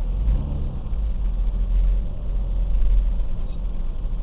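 A vehicle's engine running at low speed, heard from inside the cabin as a steady low rumble, with a brief wavering pitch in the first second.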